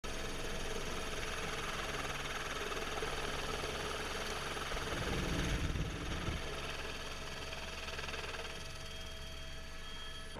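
Helicopter engine and rotor running steadily, heard from the open door of the cabin, a constant whine over a low rumble that swells louder for about a second around the middle.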